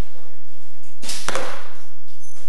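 An arrow shot from a bow: one sharp burst of string release and arrow flight about a second in, with a short echo in the hall.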